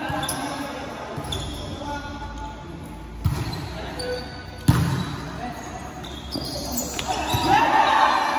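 A volleyball being struck twice, about a second and a half apart, the second hit the loudest and sharpest, each echoing briefly in a gymnasium. Players shout near the end as the rally plays out.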